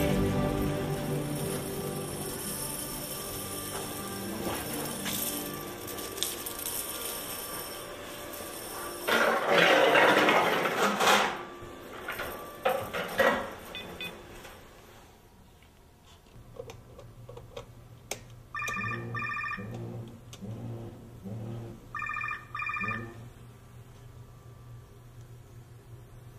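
Background music fading away, then a phone ringing: two short trilling rings a few seconds apart near the end.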